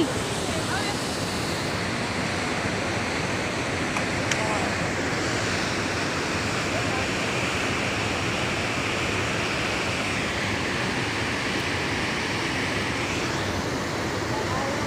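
Steady rushing of the Alaknanda River's whitewater rapids, an even, unbroken noise.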